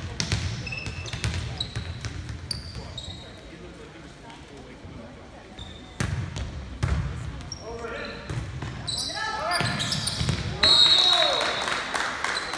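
Volleyball rally on a hardwood gym court. There are sharp slaps of hands hitting the ball and short squeaks of sneakers, two loud hits about halfway through, and players and spectators shouting. A referee's whistle blows about a second before the end.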